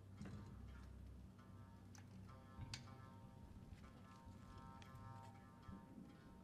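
Near silence over a low hum, with scattered faint clicks and a few soft plucked notes from a Tsugaru shamisen being handled and tuned.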